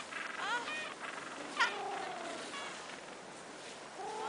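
Penguins calling: a few short calls with wavering pitch, then, about a second and a half in, a sharp call that drops steeply in pitch and trails off in a long falling note.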